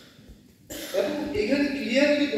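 Speech: a brief pause, then a voice starts abruptly about two-thirds of a second in and carries on.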